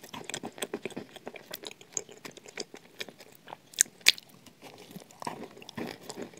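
Close-miked chewing of shortbread topped with chocolate cream: a run of crunches and wet mouth clicks, with two sharper crunches about four seconds in.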